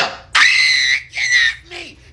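A person screaming: one long, high-pitched scream, followed by a shorter cry that falls in pitch.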